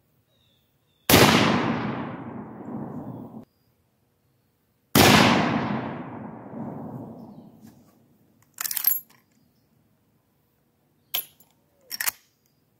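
Two rifle shots from a Rossi R95 .30-30 lever-action, about four seconds apart, each echoing away for a couple of seconds. A few seconds after the second shot comes a short metallic clack with a ringing edge, then a couple of faint clicks, as the lever is worked to eject the spent case.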